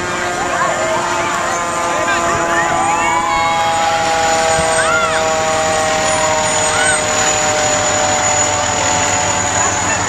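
Fire engine rolling slowly past in a parade, with several held tones sounding together and a siren gliding up in pitch about three seconds in, over crowd voices and shouts.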